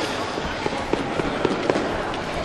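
Ice stocks clacking on the ice: about six sharp knocks in quick, irregular succession over steady hall noise.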